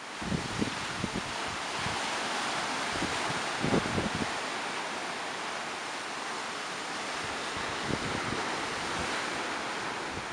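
Sea surf breaking and washing onto the shore in a steady rush, with wind gusting on the microphone, the strongest gust about four seconds in.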